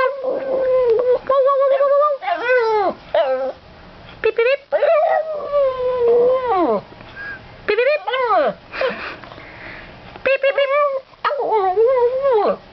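Boston terrier howling along in a string of drawn-out, wavering howls, each held near one pitch and then sliding down, with short gaps between them.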